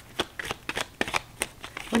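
A deck of tarot cards being shuffled by hand: a quick, irregular run of short card flicks and snaps, about a dozen in two seconds.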